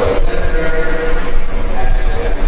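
A man's voice speaking into a microphone over a public-address system, with a steady low hum underneath.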